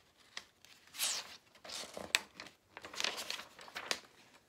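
Paper pages of a thin paperback picture book being turned and handled: several short papery swishes and rustles, with a sharp crackle about two seconds in.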